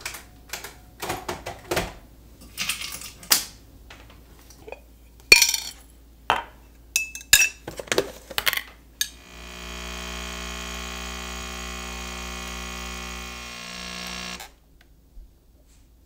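Clicks and knocks of a glass, a tin lid and other kitchen items being handled, then an espresso machine's pump buzzing steadily for about five seconds as it brews into a glass, cutting off suddenly.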